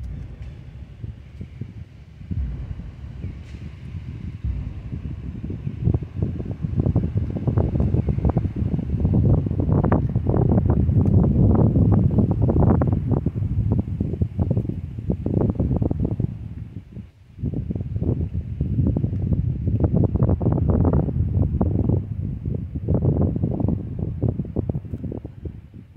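Wind buffeting the microphone: a gusty low rumble that builds over the first few seconds, drops out briefly about two-thirds of the way through, then returns.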